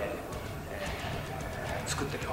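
A man talking in Japanese, quieter and broken up between phrases, over a steady low room hum.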